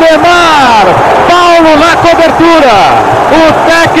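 Only speech: a male television commentator narrating the match in Portuguese, talking quickly and continuously.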